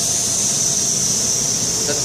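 Bostomatic 32GS high-speed CNC milling machine running: a steady high-pitched hiss over a broad, even machine-shop noise.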